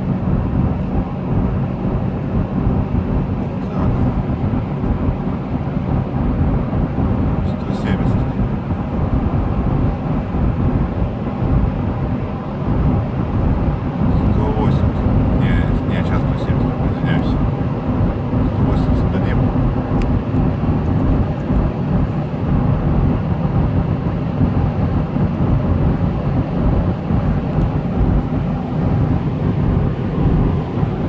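In-cabin drone of a Toyota Land Cruiser Prado 150 cruising at highway speed, its 2.8-litre four-cylinder turbodiesel pulling steadily under road and wind noise. The rumble stays even throughout.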